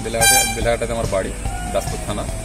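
A man's voice over background music, with one short, loud, horn-like blast about a quarter second in.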